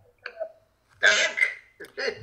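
Short, indistinct bursts of a man's voice over a video call link, the loudest and longest about a second in.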